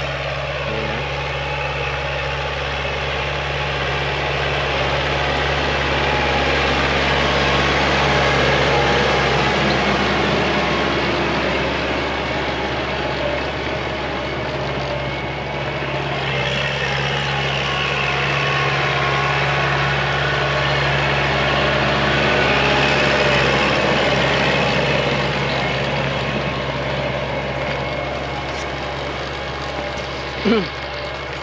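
Tractor diesel engine running steadily under load, pulling a rotary tiller that churns through dry field soil. The sound grows louder and softer twice as the tractor works nearer and then away.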